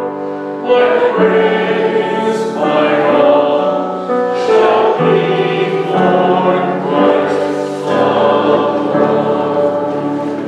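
A group of voices singing a slow hymn together, each note held about half a second to a second before moving on.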